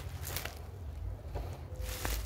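Clear plastic bag rustling and crinkling in a few short bursts as it is unwrapped by hand, over a low steady rumble.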